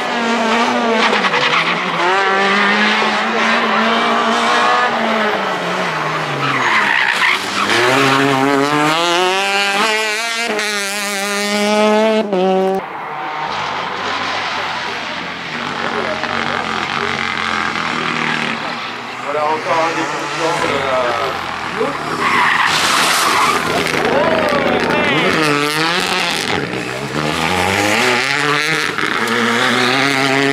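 Rally cars at full throttle on a tarmac special stage, engines revving up and dropping back with each gear change. The sound breaks off suddenly about twelve seconds in, then another car climbs through its gears.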